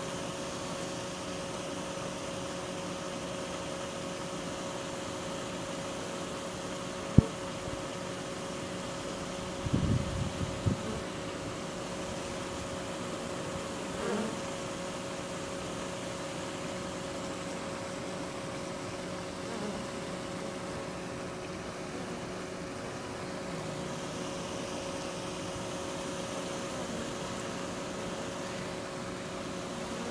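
Honeybee swarm buzzing in a steady, dense hum. A sharp click comes about seven seconds in, and brief louder low rumbling noises come about ten seconds in.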